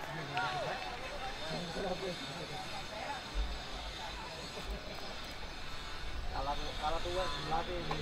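Scattered shouts and calls from youth football players on an open pitch, heard from a distance, over a low rumble that swells about midway and again toward the end.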